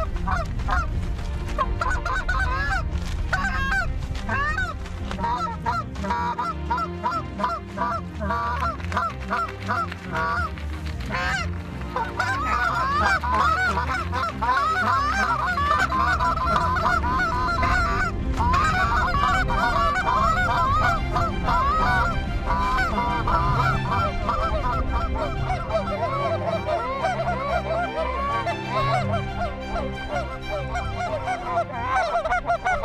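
Canada geese and hunters' goose calls honking together in a dense, unbroken run of short overlapping honks that rise and fall in pitch.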